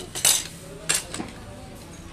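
Metal cutlery clinking against plates as people eat, with two sharp clinks: the louder about a quarter second in, the other just before the one-second mark.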